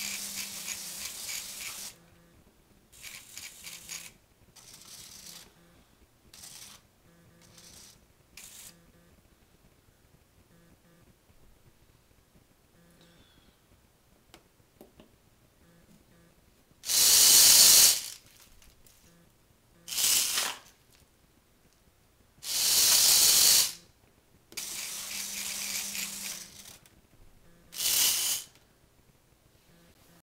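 Motors and plastic gear trains of a K'nex claw machine running in short stop-start bursts as it is moved under joystick control, with a rattling whir. The first half has smaller bursts; five louder ones follow in the second half.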